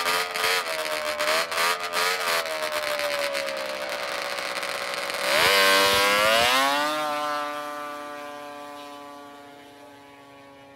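Drag-racing snowmobile engine revved hard and unevenly on the start line, then launching about five seconds in: the sound jumps louder as the pitch dips and climbs, then fades as the sled speeds away down the ice track.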